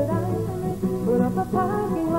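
A woman singing a slow song to her own acoustic guitar accompaniment.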